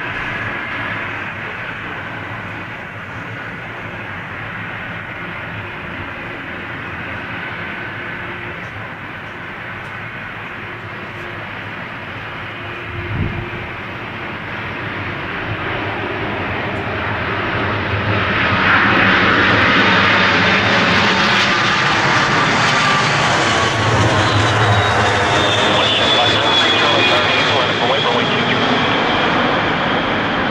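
British Airways Boeing 747-400 on final approach, the jet noise of its four Rolls-Royce RB211 engines building steadily and getting loud as it comes close about two-thirds of the way in. High engine whines slide downward in pitch as the jet goes past toward touchdown.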